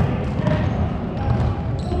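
Futsal ball being kicked and bouncing on a wooden sports-hall court, with scattered footfalls and players' voices calling out in the large hall.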